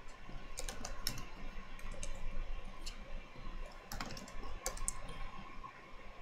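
Typing on a computer keyboard: scattered keystrokes in short irregular clusters with pauses between them.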